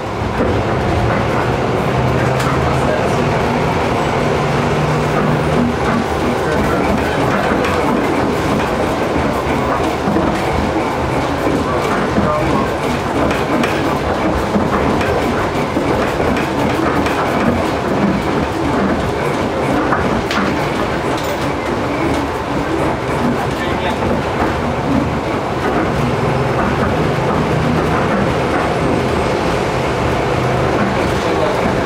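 Tram running along street track, heard from inside: steady wheel-on-rail rumble and rattle, with a low motor hum that comes in near the start and again near the end.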